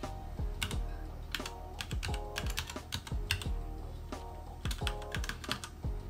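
Typing on a computer keyboard: an uneven run of key clicks, with a short pause a little after halfway, as a password is entered.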